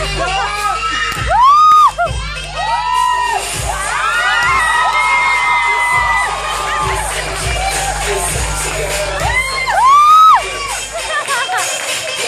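Audience screaming and cheering over dance-pop music with a steady beat, with loud high-pitched screams about a second and a half in and again near ten seconds. The music cuts out shortly before the end.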